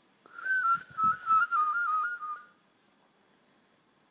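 A boy's mouth whistle: one whistled note, about two seconds long, that wavers in quick small steps and drifts slightly lower, then stops. It is his demonstration of the "whistle and make an L" trick, shaped by saying "two" and then "L" while blowing.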